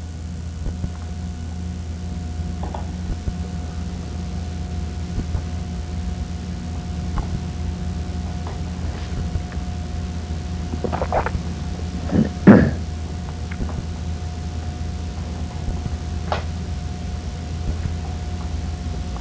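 A few light clicks and knocks of a hand tool and screws on the air sampler's metal cord connector box as its two screws are removed, the loudest knock about two-thirds of the way through. A steady low hum runs underneath throughout.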